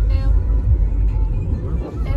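A car driving, heard from inside the cabin: a steady low rumble of road and engine noise.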